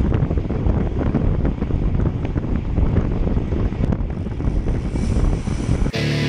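Wind buffeting the microphone of a camera on a road bike riding at speed, a dense low rumble with rapid flutter.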